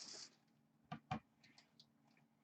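Near silence with two light clicks about a second in, a quarter second apart, and a few fainter ticks after: a hard plastic graded card slab being handled on a table.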